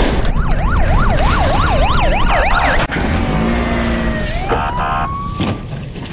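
Police siren in rapid up-and-down sweeps, about three a second, with a second siren overlapping briefly; it cuts off abruptly about three seconds in. A slower tone follows, falling and then rising, over a steady low rumble.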